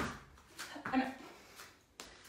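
Half burpees on an exercise mat: a sharp short sound right at the start as she springs up, then a few short breaths, with one spoken word about a second in.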